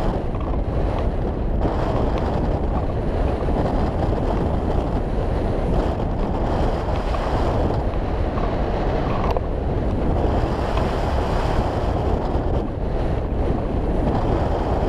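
Steady, low rush of airflow buffeting the microphone of a camera mounted on a hang glider's wing in flight in strong wind.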